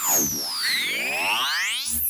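Synthesized title-sting sound effect: a cluster of electronic tones sweeping down and up in pitch at the same time, criss-crossing, starting suddenly.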